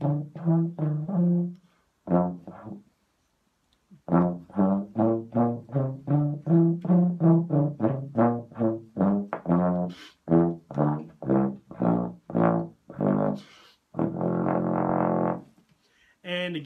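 A BBb/FF contrabass trombone played softly with a Denis Wick 0AL bass trombone mouthpiece: runs of short, detached low notes, a pause of about two seconds early on, then a long run of short notes and one longer held note near the end. The mouthpiece is too small for this instrument, and to the player the notes sound thinner, with the bottom of the range lost.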